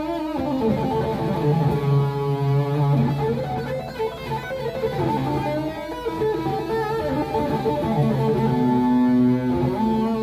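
EVH Wolfgang electric guitar played lead, with held notes that waver in vibrato. It is heard through a pair of studio monitors.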